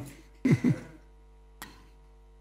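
A man clears his throat in two short pushes, straining a voice that he strained by shouting earlier. A single sharp click follows near the end, over a faint steady hum.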